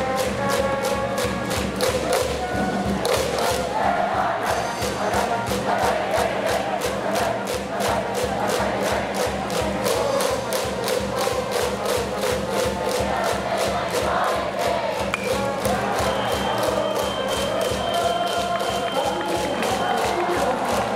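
A baseball cheering section in the stands: music over a steady, evenly spaced drum beat, with the crowd chanting and singing along.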